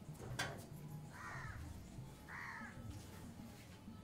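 Two short bird calls about a second apart, faint, with a short click just before the first.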